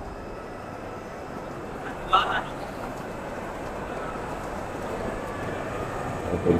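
Exhibition-hall ambience: a steady hum of the hall and a background murmur of visitors' voices, with a brief louder sound about two seconds in.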